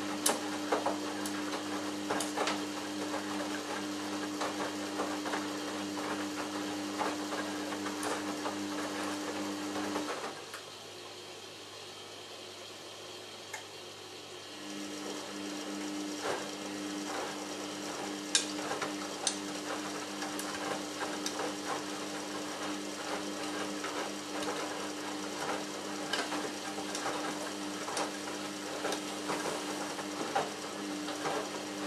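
Samsung Ecobubble WF1804WPU front-loading washing machine tumbling its load in the cold main wash. A steady motor hum comes with water and laundry sloshing and clicking in the drum. About ten seconds in the drum stops for a pause of about four seconds, then starts turning again.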